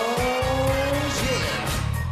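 Live pop music from a band with a strong, steady beat; over it a tone slides upward and then holds during the first second or so.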